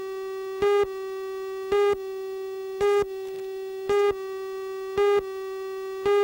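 Videotape countdown-leader tone: a steady electronic tone with a louder beep about once a second, one beep for each number of the countdown.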